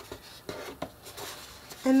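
Hands pressing and rubbing a chipboard panel down onto a glued chipboard piece: faint rubbing with a few light clicks.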